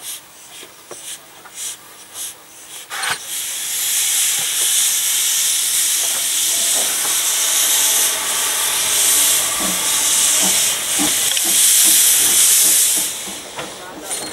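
Narrow-gauge steam locomotive letting off steam: a loud, steady hiss starts about three seconds in and cuts off shortly before the end, with a few faint knocks before it.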